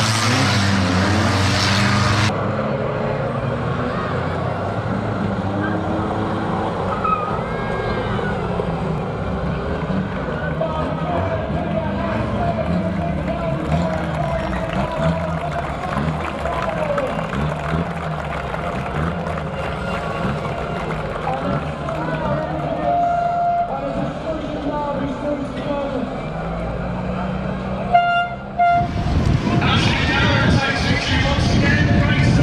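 Banger van engines running and revving at low speed, with a vehicle horn tooting briefly a couple of times near the end.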